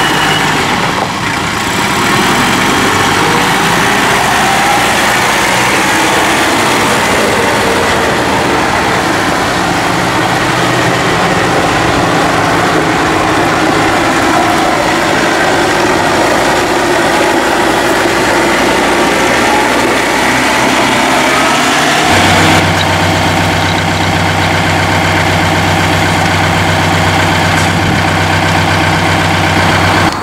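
A John Deere 4052R compact tractor's four-cylinder diesel engine runs steadily while the tractor is driven. About 22 seconds in, the sound changes abruptly to a steadier, deeper engine hum.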